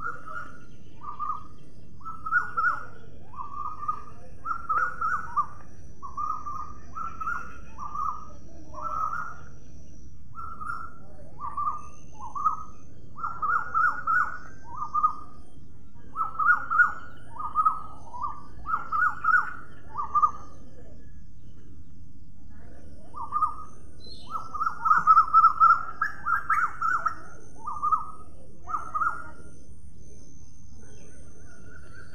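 Blue-headed parrots calling: short, clipped notes repeated in runs of several a second. The calls pause briefly about a third of the way through and again past the middle, and the busiest, loudest run comes a few seconds before the end.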